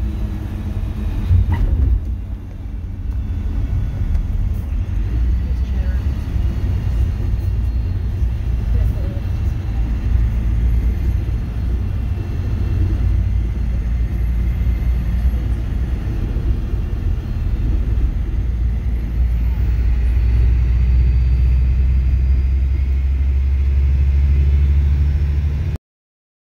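Tour coach running along a country road, heard from inside the passenger cabin: a steady low engine and road rumble that grows a little louder near the end, then cuts off suddenly.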